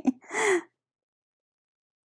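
A woman's short breathy exhale with a slight falling pitch, the tail end of a laugh, in the first second. Then dead silence.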